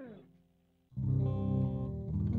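Electric guitar recorded through a small 15-watt practice amp with a damaged speaker cone. A held note slides down in pitch and dies away, and after a short gap a new guitar phrase starts about a second in.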